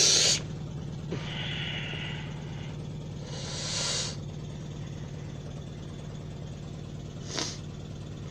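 A steady low hum, with a few brief rustles of the phone being handled and moved: one at the start, a couple between about one and four seconds in, and a short one near the end.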